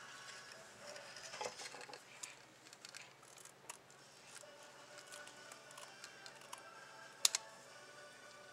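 Small craft scissors snipping lace ribbon, with faint rustling of the lace as it is handled and a sharp click about seven seconds in.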